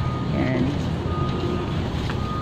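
Steady low rumble of outdoor background noise, with a thin high steady tone that drops out and comes back about a second in, and brief voices around half a second in.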